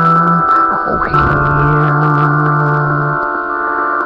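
A band's song in an instrumental passage: sustained keyboard chords over a low held note that lasts about two seconds, with a few short sliding notes.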